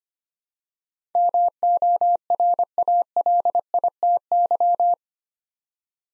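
Morse code at 25 words per minute, a single pure tone keyed on and off in dots and dashes, repeating the word "morality". It starts about a second in and lasts about four seconds.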